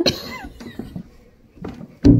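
A short, throaty burst from a person at the start, tailing off over about half a second, followed by a second brief burst about one and a half seconds in.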